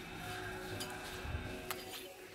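Faint background music in a shop, with a light click near the end.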